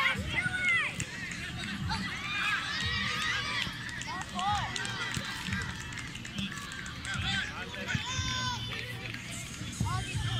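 Indistinct shouts and calls from players and spectators around a youth football pitch, many short overlapping cries, over a steady low hum.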